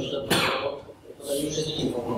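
A person coughing, a sharp cough about a third of a second in, with speech around it.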